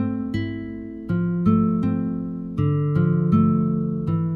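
Sampled nylon-string guitar (a software instrument preset) playing a slow broken-chord pattern, a new plucked note about every third of a second, each ringing on under the next. The notes spell out triads built by stacking every other note of the scale.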